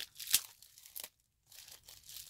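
Clear plastic bubble wrap crinkling and crackling in the hands as a small item is unwrapped, with one sharp crackle about a third of a second in and a short pause past the middle.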